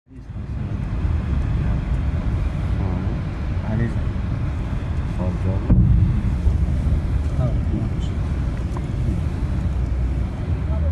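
Low, steady rumble of a vehicle driving over a rough road, heard from inside the vehicle, with one sudden loud knock a little past halfway.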